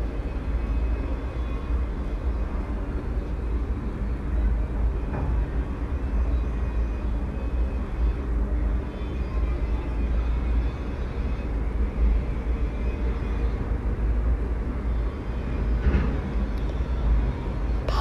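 Steady low rumble of background noise, even throughout, with no distinct events.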